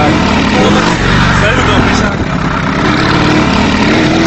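Moving motor vehicles at road speed: loud, steady engine and road noise, with voices mixed in.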